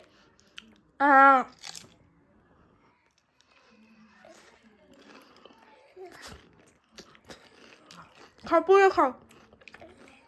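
A toddler chewing a fried snack, heard as faint mouth clicks and crunches. Two brief, loud, high voice calls come about a second in and again near the end.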